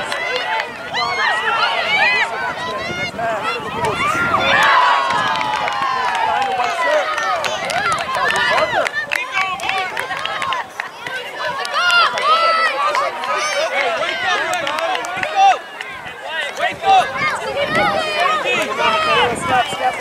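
Many overlapping voices of players and spectators shouting and calling out around a youth soccer field, with no single speaker standing out.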